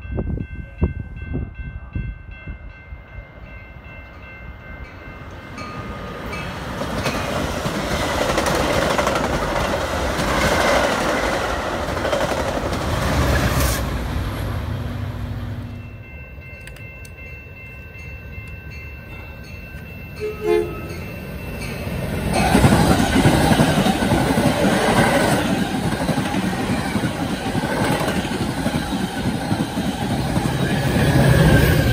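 Metra diesel commuter trains with double-deck stainless steel cars: a horn sounds as a train approaches, then the noise of its wheels on the rails builds as it passes. The sound changes abruptly about halfway, and the same sequence repeats: a horn, then a second train passing close by, loudest near the end.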